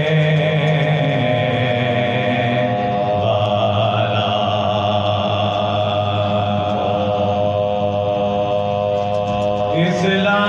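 Soz khwani, a slow chanted Urdu elegy sung by male voices, drawn out on long sustained notes. The pitch moves to a new note about three seconds in and again near the end.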